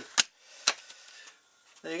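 Two sharp clacks about half a second apart, the first much louder, as bagged quadcopter frame parts are put down on a workbench, followed by faint handling noise.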